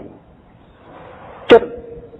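A man's preaching voice in Khmer: a pause with faint room tone, then one short syllable about one and a half seconds in, its pitch held briefly.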